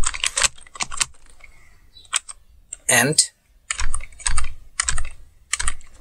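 Typing on a computer keyboard, keystrokes in bursts: a run at the start, a couple of keys about two seconds in, and another run through the second half.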